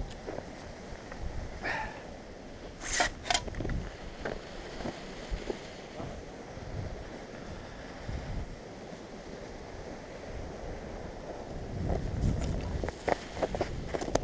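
Low rumbling wind and handling noise on a helmet-mounted camera's microphone, with two sharp clicks about three seconds in.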